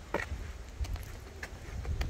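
Wind rumbling on the microphone outdoors, with a few short faint clicks scattered through it.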